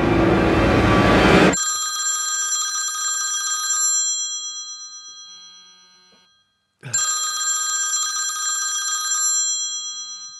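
A mobile phone ringing twice, each ring a chord of steady high tones that fades out over a couple of seconds. Before the first ring, a loud dense rumbling noise cuts off suddenly about a second and a half in.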